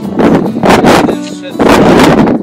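Wind buffeting the microphone in three loud gusts of rushing noise, with music underneath.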